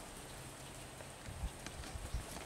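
Footsteps on dry ground: a few dull low thuds, about one and a half seconds in and again near the end, over a faint steady outdoor background.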